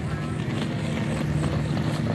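A steady low engine rumble, with no voices standing out over it.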